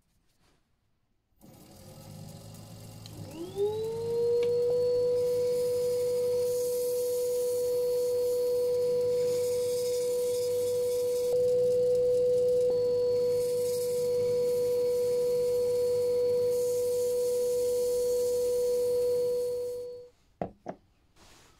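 A workshop machine's electric motor starting up: a low rumble, then a whine that rises in pitch over about a second and settles into a steady high hum. It runs on until it cuts off at the very end.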